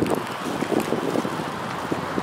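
A person chewing a mouthful of Snickers bar close to the microphone, with small irregular wet clicks. Wind on the microphone runs underneath.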